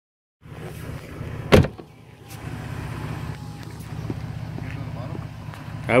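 Toyota Tacoma pickup's engine idling steadily, with the driver's door shut once about a second and a half in.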